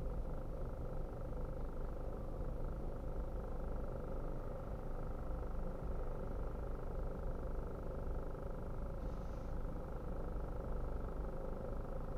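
Car engine idling, heard from inside the cabin: a steady low hum while the car stands still.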